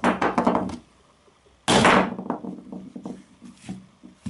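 A stone striking a smartphone lying on a wooden workbench: a quick run of hard knocks at the start, and a single heavier hit a little under two seconds in, the loudest sound, which dies away quickly. Lighter clicks and taps follow as the phone is handled on the bench.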